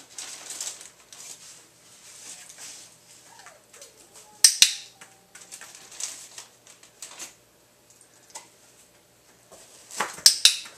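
A sharp plastic click, twice in quick succession, about four and a half seconds in. Around it are soft rustling and light knocks as the dog moves on the foam mats.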